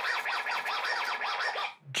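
VTech children's toy DJ music studio playing a rapid run of short, warbling electronic tones, which cuts off just before the end.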